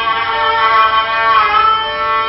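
Live instrumental music from a plucked lute-like string instrument and a bowed string instrument. Long held notes, with a bend in pitch about one and a half seconds in.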